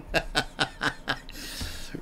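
A man chuckling: quick breathy laughs about four a second, fading, then a drawn-out breathy hiss near the end.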